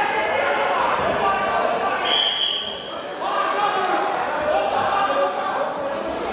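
Referee's whistle blown once, about two seconds in, as a short, steady, shrill blast of about half a second. Voices carry on around it, echoing in a large hall.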